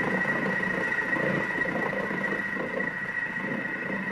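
Thermomix TM6 running a cooking program, its blade stirring slowly in reverse at speed 0.5 while heating to 100 °C: a steady high whine over a rough, even lower noise.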